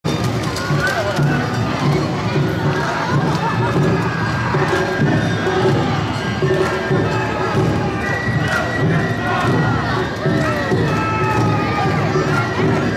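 Awa Odori street dance in full swing: dancers' shouted calls and a festival crowd over the troupe's accompaniment of drums and flute, with a steady pulsing beat throughout.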